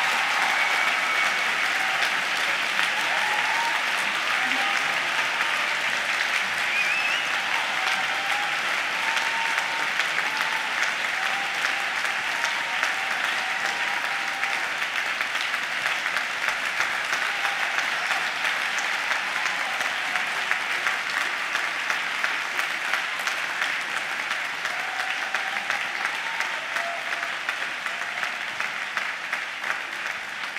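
A theatre audience applauding after a ballet pas de deux, with a few voices calling out over the clapping. The applause holds steady, then slowly dies down near the end.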